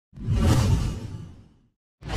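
Whoosh sound effect: one rushing swell with a heavy low rumble that builds quickly, peaks about half a second in and fades away over the next second.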